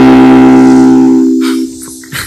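Effects-processed ukulele chord held and ringing out steadily, then fading away about three-quarters of the way through, followed by a few faint clicks.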